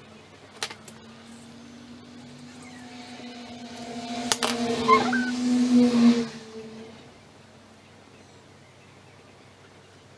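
A motor vehicle passing by: a steady engine hum that builds over several seconds and fades out about seven seconds in. There are two sharp clicks, one early and one near the loudest point.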